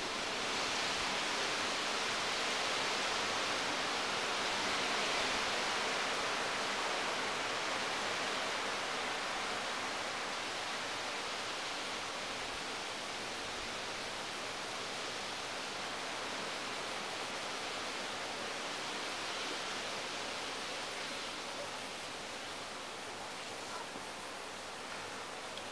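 Steady rushing hiss that swells about a second in and eases a little near the end.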